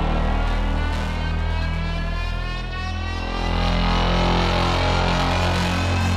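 Background music: a steady low drone with a layered tone that rises slowly in pitch.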